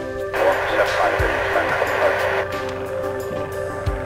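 Background electronic music with steady sustained synth chords and a few deep bass hits. A dense hiss-like burst sits over the music from just after the start until about halfway through.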